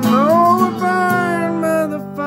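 Acoustic guitar chord ringing under a man's sung note that slides upward at the start and is then held, with the sound easing off near the end.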